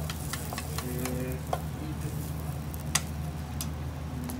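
Egg sizzling in an iron frying pan over a gas burner while wooden chopsticks stir it, clicking and scraping against the pan, over a steady low hum. A sharper knock comes about three seconds in.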